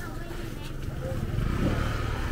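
Small motorbike engine running close by, growing louder in the second half, over the chatter of voices.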